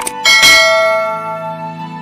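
Two quick mouse clicks, then a bell chime that rings out loud and fades over about a second: the notification-bell sound effect of a subscribe animation.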